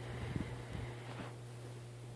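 Quiet room tone: a steady low hum with a few faint soft ticks in the first second.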